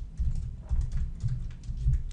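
Typing on a computer keyboard: a quick, irregular run of key clicks with dull thuds under them.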